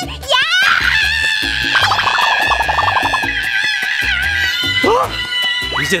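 Background music with a steady beat, under a long, drawn-out vocal cry that rises in pitch at first and is then held for about five seconds.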